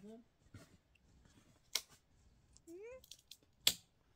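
Two sharp clicks, about two seconds apart, with a short rising voice sound between them.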